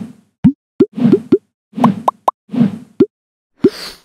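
Cartoon sound effects: an irregular run of quick plops, short pops that glide upward in pitch, mixed with soft low thumps, about a dozen in all.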